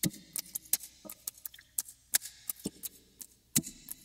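Delta output of the oeksound SPIFF transient processor on an acoustic guitar track: only the pick attack the plugin adds, heard as an irregular patter of sharp clicks with nothing of the notes between them. It sounds like water. The boost is there to restore the attack of old, dead strings.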